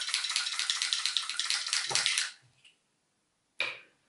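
Plastic garlic grater rasping garlic, a quick even scraping rattle of about ten strokes a second that stops abruptly about two seconds in; the cheap gadget is stiff to work. A short handling noise follows near the end.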